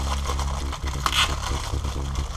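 A low steady hum with one brief scrape about a second in.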